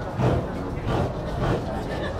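Indistinct voices of people talking nearby over the general noise of a busy pedestrian street, louder in a few short bursts.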